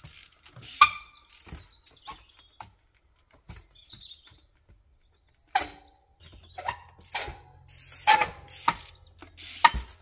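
Trials bike hopping and landing on wooden beams and logs: sharp knocks of the tyres and rims striking timber, with mechanical clicking from the bike's ratchet freewheel. There is one knock about a second in, then a quiet spell, then a quick series of loud knocks in the last few seconds.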